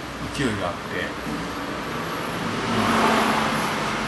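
Road traffic noise swelling up to its loudest about three seconds in, with a steady low hum beneath it.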